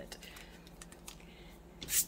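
A few light clicks and taps of a pen being handled, with one sharper click near the end.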